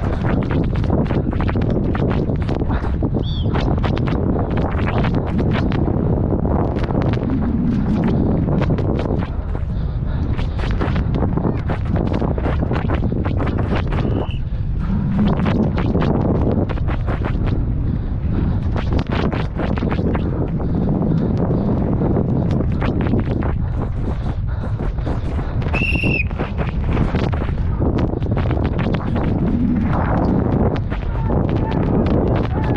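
Downhill mountain bike (Canyon Sender) descending at race speed: a constant rush of wind on the microphone with continual rattling and knocking from the bike over rough trail. A brief high whistle sounds about 26 seconds in.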